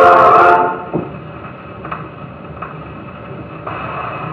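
The last chord of a 1928 Victor 78 rpm record, played through an acoustic Victrola's horn, fades out about a second in. After it the needle keeps running in the groove, giving surface hiss and a few faint clicks about once per turn of the record.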